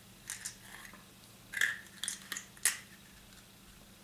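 A small white plastic surprise-egg toy capsule being handled and pried open, giving a few light plastic clicks and rustles, with the sharpest click about two-thirds of the way through.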